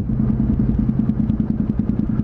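Honda CTX700 motorcycle's parallel-twin engine running steadily at cruising speed, heard from the rider's seat as a low, even hum.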